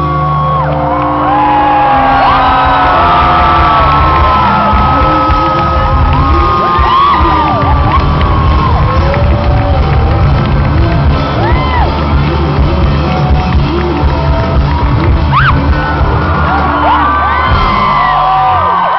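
Live rock band with electric guitars, bass and drums playing loud, held closing chords at a big outdoor show, with many crowd members whooping and shouting over the music. The band stops shortly before the end, leaving the crowd cheering.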